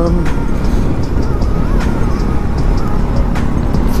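Steady wind noise buffeting the action camera's microphone over a Bajaj Pulsar NS200 motorcycle running at cruising speed, with music faintly underneath.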